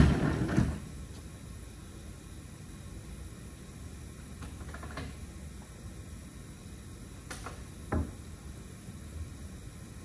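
A wheeled plywood counter case rolling across the floor on its casters, stopping about a second in. Then a few light wooden knocks and one dull thump near the end as the case's panels and halves are handled, like a cabinet opening and closing.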